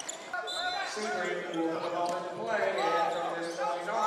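Gym game sounds during a basketball game: a basketball being dribbled on a hardwood court, with players' and spectators' voices echoing in a large gym.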